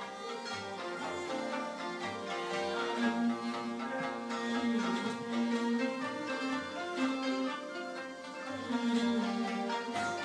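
Mongolian traditional folk ensemble playing a tune led by bowed horsehead fiddles (morin khuur), with held melody notes over a pulsing low bass line.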